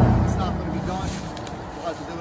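A motor vehicle passing on the road, loudest at the start and fading away over the next two seconds.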